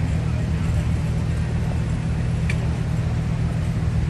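Steady low rumble of a car's engine and road noise heard from inside the cabin, with one light click midway.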